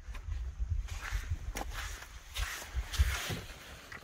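Footsteps on shore rocks and knocks against the hull as a person climbs into a loaded canoe, with scattered scuffs over a low, uneven rumble throughout.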